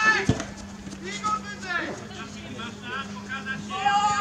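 Players and onlookers calling and shouting across a football pitch during play, with a dull thump about a third of a second in and a steady faint low hum underneath.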